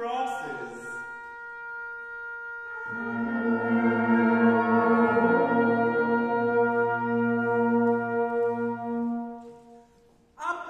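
Symphonic wind band sustaining a single held note, then swelling into a full held chord with a low bass line underneath from about three seconds in. The chord stops shortly before the end.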